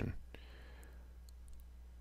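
Quiet room tone with a low, steady electrical hum and one faint click early on.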